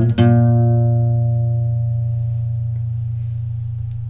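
Acoustic guitar strums a final chord right at the start, then lets it ring out and fade slowly: the closing chord of the song.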